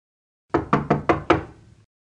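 Five quick knocks on a wooden door, evenly spaced, starting about half a second in.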